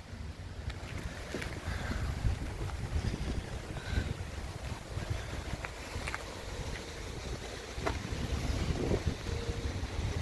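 Wind buffeting a phone microphone outdoors, an uneven low rumble that rises and falls, with a few faint clicks scattered through it.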